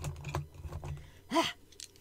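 A handful of watercolour pencils clattering as they are dropped into a pencil mug: a rapid run of rattling clicks that thins out over the first second. A short "Ah!" exclamation follows about a second and a half in.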